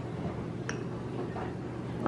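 Metal fork pressing a strawberry in a small glass bowl, with a few soft clicks of the tines against the glass, the clearest about a third of the way in.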